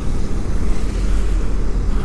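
Motorcycle under way: a steady low rumble of engine and wind noise on a helmet-mounted camera, without breaks or sudden events.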